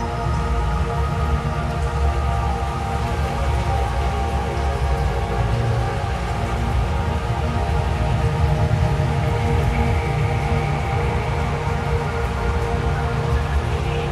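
Dark ambient drone music: a deep rumble under many layered, held tones, with a steady rain-like hiss. A higher held tone comes in about ten seconds in.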